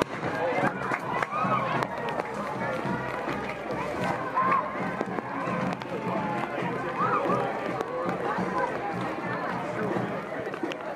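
Crowd of parade spectators: many voices talking and calling out over one another, with a steady low hum underneath.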